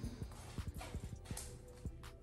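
Faint, irregular soft thumps and taps, about a dozen in two seconds, from a person moving onto a bed.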